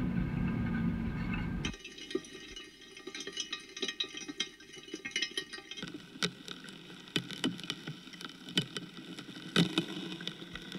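Film soundtrack: a low drone stops about two seconds in, giving way to sparse irregular clicks and crackles over faint, steady high tones. The texture shifts again about six seconds in.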